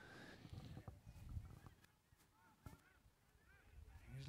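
Near silence, with about five faint, short calls from a distance, each rising and falling in pitch, spread through the stretch.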